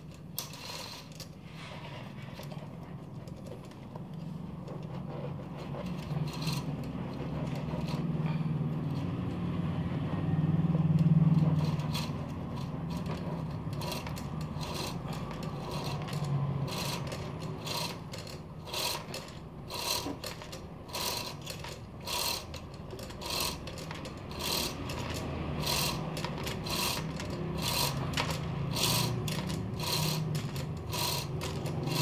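Mountain bike chain being scrubbed with a cloth soaked in vinegar and dish soap cleaning solution, its links and the rear derailleur clicking and rattling, about two clicks a second in the second half. A low hum swells about ten seconds in and then fades.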